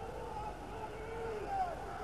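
Arena crowd noise in a gymnasium, a steady hubbub with a few voices shouting above it.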